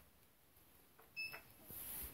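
A lift's electronic beep: one short, high-pitched beep about a second in, followed by a low rumble near the end.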